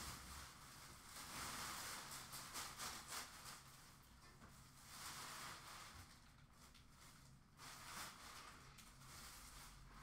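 Faint rustling of trash being emptied out of a bin, in a few irregular spells about a second in, around five seconds and near eight seconds.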